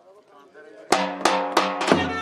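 Folk dance music strikes up suddenly about a second in: loud, evenly spaced drum beats with a held melody over them, after a quiet first second with a faint voice.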